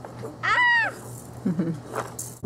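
A young child's single high-pitched squeal, rising then falling in pitch, about half a second long; a brief lower voice sound follows near the end.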